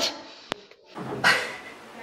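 A sharp click about half a second in, then a short breathy noise about a second in, a person breathing hard through the nose.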